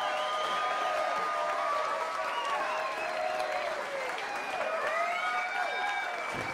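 Audience applauding and cheering right after a live band's song ends, with steady clapping and overlapping shouts and whoops.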